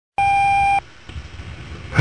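Answering-machine beep: one steady electronic tone lasting just over half a second, followed by faint hiss and low hum.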